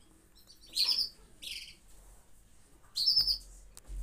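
A small bird chirping in three short bursts of quick, high-pitched chirps.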